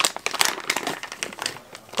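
Plastic pouch of cat treats crinkling as it is handled: a dense run of crackles that thins out and gets quieter toward the end.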